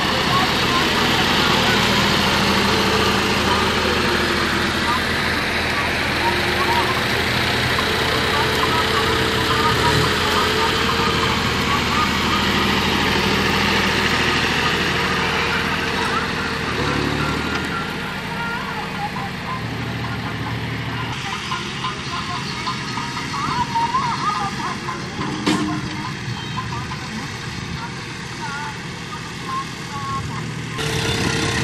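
Three-cylinder diesel engines of John Deere 5050 tractors running steadily under load as they work the field, one pulling a laser land leveler. The engines are loud and close at first, then fainter as the nearer tractor moves away about halfway through, with one sharp click later on.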